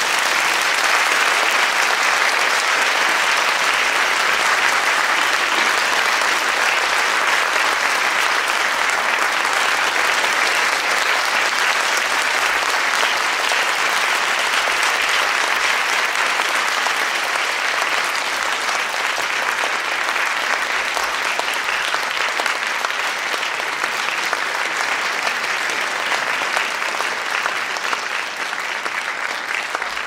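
Sustained crowd applause, a steady dense clapping that eases off a little near the end.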